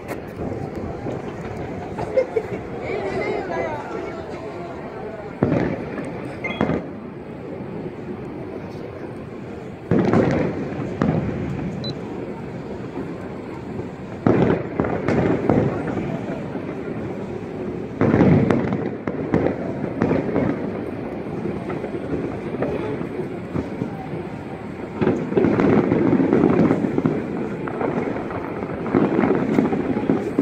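Fireworks bursting in the distance: a booming burst every few seconds, each trailing off over a second or two, coming thicker near the end.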